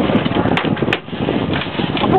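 Twin outboard motors running at low speed behind the boat, a steady noisy drone, with two sharp clicks about half a second apart near the middle.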